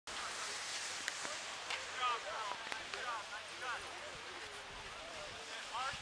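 Short calls and voices of people out on a ski slope, heard over a steady hiss of a board sliding on snow, with a few faint clicks.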